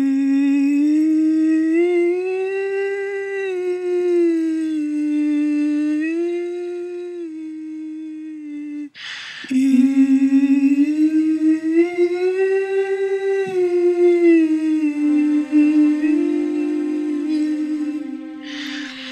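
A voice humming a slow, wordless melody in long held notes that glide gently up and down. Two phrases are separated by a breath about nine seconds in.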